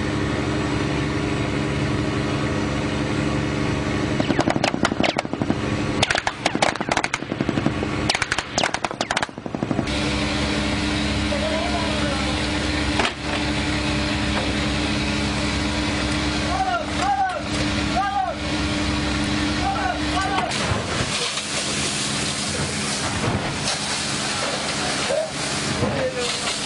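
Boat engine running steadily, with a cluster of sharp cracks from about four to ten seconds in and scattered voices later.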